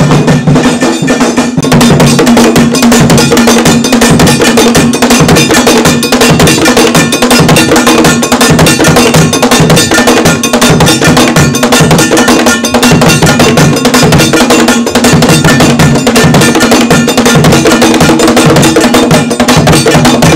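Ashanti traditional drum ensemble playing a fast, steady rhythm on stick-beaten drums, with a ringing metal bell part running through it.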